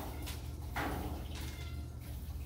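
A small hand broom sweeping litter off a pulled-out metal cat-cage pan into a dustpan: a brushing scrape of about a second near the middle, over a steady low room hum.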